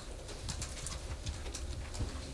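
Room tone: a low steady hum with faint scattered clicks and rustling.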